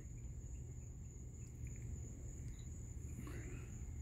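Faint, steady high-pitched trilling of night crickets, with a brief soft rustle about three seconds in.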